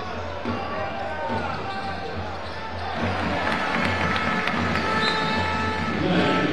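A basketball being dribbled on a hardwood court during live play, over a background of voices and music in the arena.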